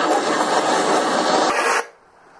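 A loud, dense rushing noise with no clear voice or tone in it, cutting off abruptly just before the end.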